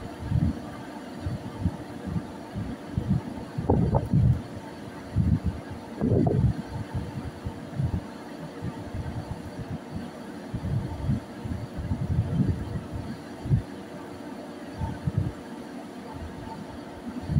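Steady low hum of a ship's engines and machinery, overlaid by irregular low rumbling gusts of wind buffeting the microphone on the open deck.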